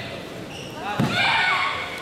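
A karate kumite exchange: a sharp thud about a second in, a bare foot stamping on the mat or a blow landing, followed at once by a loud shout.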